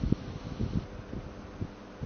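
Irregular low thumps and rubbing from a handheld phone's microphone being handled, over a faint steady hum.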